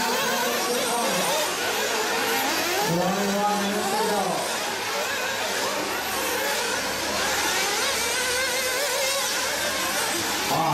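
Several nitro RC buggies' small glow-fuel engines buzzing and revving up and down as they race around the track, with a voice talking over them at times.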